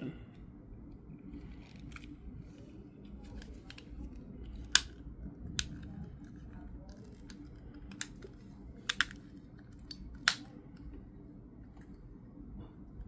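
Sharp plastic clicks from the casing of a 2020 Audi A8 smart key fob as its parts are fitted and pushed together by hand: about six scattered clicks, the loudest about five seconds in, over a low steady hum.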